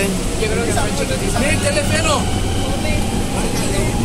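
Steady low rumble inside a crowded Mexico City Metro car, with passengers' voices heard in short snatches over it.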